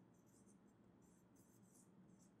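Faint squeak and scratch of a felt-tip marker writing on a whiteboard, a quick series of short strokes.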